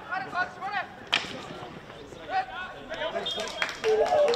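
A single sharp crack about a second in: a field hockey stick striking the ball on an artificial-turf pitch. Players' shouts come before and after it.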